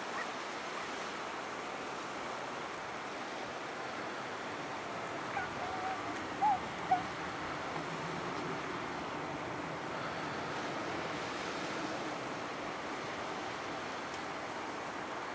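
Steady outdoor ambient noise over a harbour at night, with a few brief high chirps about six to seven seconds in.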